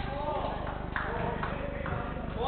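Players' voices calling out during a football game, with several sharp knocks from the play on the court.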